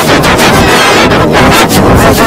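Heavily distorted, overdriven audio from video-editing effects: a loud, continuous crackling noise with no clear tune or voice.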